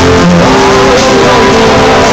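Live rock band playing loud, with electric guitars and a man singing into a microphone.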